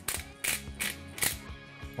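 Disposable black pepper grinder being twisted over a bowl, giving about four short crunching rasps of grinding, over background music.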